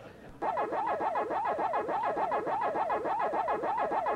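Pac-Man "waka waka" chomping sound effect: a quick electronic tone sweeping up and down about four times a second, starting about half a second in.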